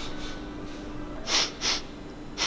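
A man sniffing sharply through the nose twice in quick succession, a bit over a second in, catching a smell.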